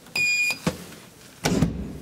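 Elevator car-panel floor button giving a single short electronic beep as it is pressed, followed by a sharp click. About a second and a half in comes a heavier mechanical clunk from the elevator.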